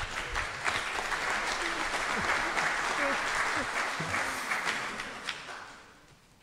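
Audience applauding at the end of a talk, the clapping steady for about four seconds and then dying away.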